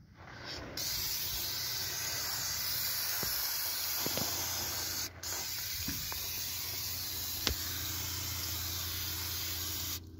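Aerosol can of Fluid Film undercoating spraying in one long steady hiss, starting about a second in, with one short break about halfway through.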